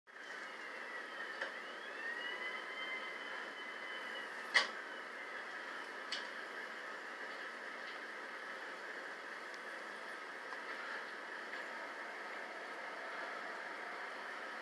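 Distant siren wailing, played back through a TV's speaker: its pitch rises and holds over the first few seconds. There is a sharp click about four and a half seconds in and a fainter one about a second and a half later.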